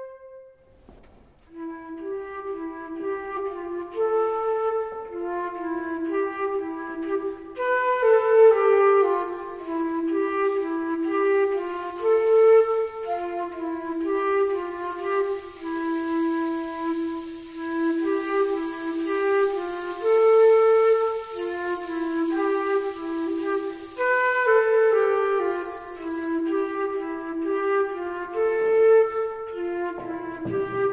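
Concert flute playing a melody in its low register. A held note ends at the very start, and after a short pause a new phrase of clearly separated notes begins about a second and a half in and carries on steadily.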